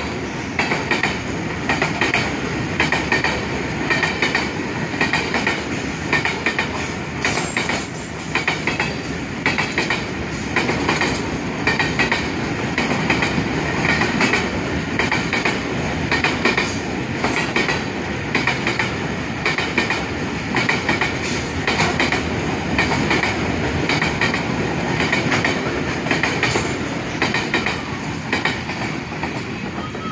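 Freight train of covered boxcars rolling past close by: a steady rumble with a rhythmic clickety-clack of wheels over the rail joints, repeating about once a second, easing slightly near the end as the last wagons go by.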